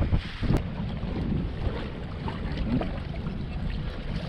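Wind buffeting the microphone over choppy water, with waves washing against the bass boat's hull. A single sharp click about half a second in.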